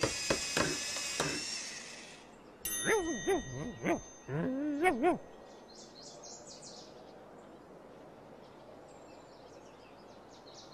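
A bright chime-like ding, joined by wordless vocal sounds for about two seconds, then a low background with faint bird chirps.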